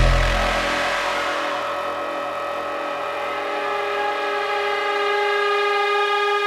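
Breakdown in a dark industrial techno mix: the kick drum and bass drop out in the first second or so, leaving a held synth drone of several steady stacked tones that swells slightly toward the end.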